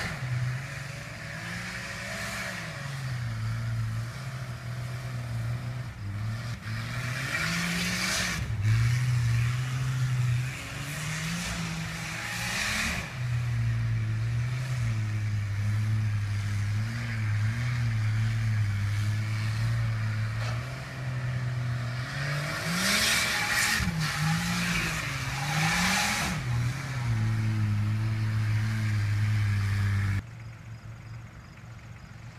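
Lifted Jeep Grand Cherokee's engine revving up and down repeatedly as it spins doughnuts on grass. Several loud rushes of noise come from the spinning wheels, clustered mostly in the last third.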